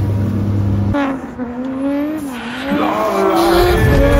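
Drift car engine revving hard, its pitch swinging up and down, with tyre squeal. A steady low drone fills the first second.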